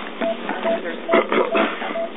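Patient monitor beeping a short, even tone a little over twice a second, at the pace of a fast pulse, with voices murmuring behind it.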